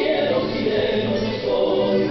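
Chilean folk song with several voices singing together over the music, at a steady level.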